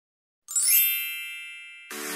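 A bright, shimmering chime sound effect comes in about half a second in, rings with many high tones and fades away. Just before the end a music track starts.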